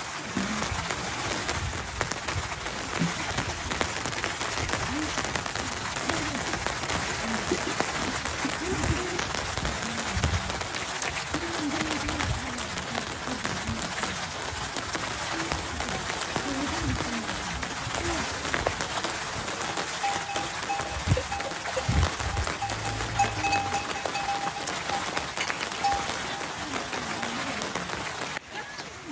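Steady rain falling, with scattered low knocks. About two-thirds of the way through, a steady high tone is held for several seconds.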